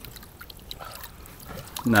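Lake water sloshing and dripping with small splashes as a carp is handled in a wet landing net in the shallows and lifted out near the end.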